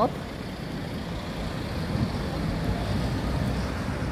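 Street traffic noise dominated by a double-decker bus driving past close by, a steady low engine rumble that builds slightly and then holds.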